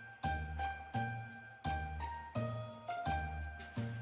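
Background music: a bell-like, jingly tune over a steady beat with low bass notes, the notes changing pitch as the melody moves.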